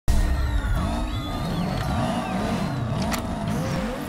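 Music playing over a car engine revving, its pitch rising and falling again and again.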